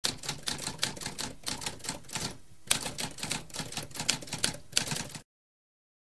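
Typewriter typing: a fast run of key strikes, broken by a short pause about two and a half seconds in, that stops a little after five seconds.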